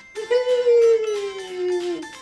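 A Chihuahua gives one long howl that slides slowly down in pitch, over background music.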